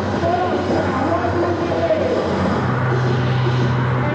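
Loud rave music with a steady heavy bass, and an MC's voice chanting over it through the microphone and PA.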